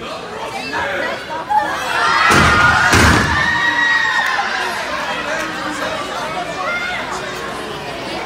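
Two heavy thuds a little over two seconds in, less than a second apart, as a wrestler is slammed down onto the ring canvas. A small crowd shouts and cheers loudly around the impacts, then keeps calling out more quietly.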